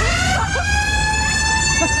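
A fairground ride's siren spinning up: its pitch rises for about a second, then holds a steady high tone.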